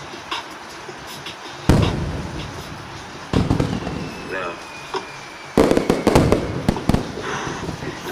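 Fireworks sound effect: three loud bangs a second or two apart, the last followed by a quick run of sharper cracks, with a faint falling whistle between the second and third.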